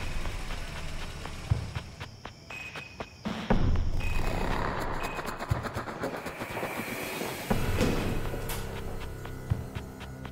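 Background music with a heavy low hit about every two seconds and swelling whooshes that build in between.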